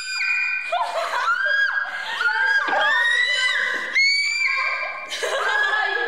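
Young women's voices shrieking long, very high-pitched held notes, several in a row and overlapping, each scooping up or sliding at its start and end: a "dolphin" high-note shriek.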